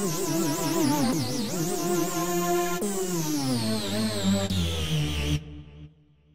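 Omnisphere's 'Horror Show' synth lead patch, an angry pitch-bend lead, played as a single line. It wavers in a fast vibrato at first, holds a steady note, then bends steadily down in pitch and cuts off about five seconds in, leaving a brief fading tail.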